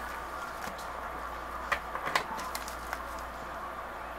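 Quiet handling noises: a few light taps and rustles of a thin plastic packet being picked up on a tabletop, the clearest about two seconds in, over a steady low hum.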